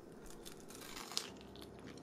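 Faint crunching of crispy fried shrimp tempura being bitten and chewed, with one sharper crunch just over a second in.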